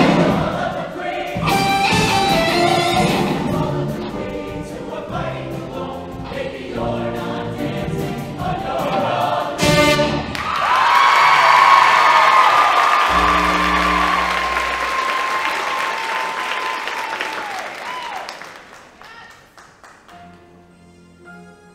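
Show choir singing with a backing band. About halfway through, the song ends on a sharp hit and the choir holds a long final chord while the audience applauds, and the sound fades away near the end.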